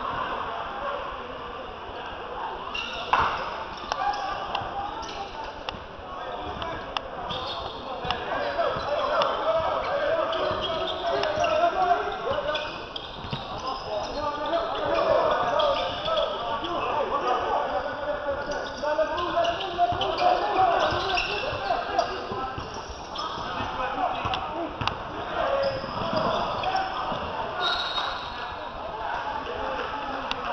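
Basketball game in a gym: indistinct chatter and calls from players and spectators, mixed with a ball bouncing on the hardwood court, with a sharp knock about three seconds in.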